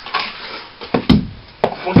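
A sharp knock about a second in, then another about half a second later: hard hits on a wooden surface.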